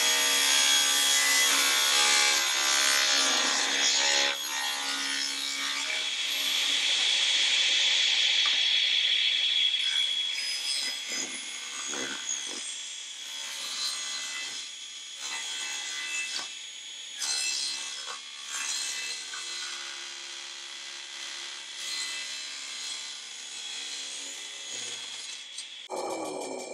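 Table saw ripping a thin triangular strip from a wooden lath: the blade cuts loudly for about the first ten seconds over the motor's steady hum, then runs more quietly, with a few knocks of wood.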